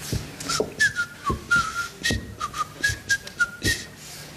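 A man whistling a tune in short notes, some sliding up or down, over a beat of low thumps.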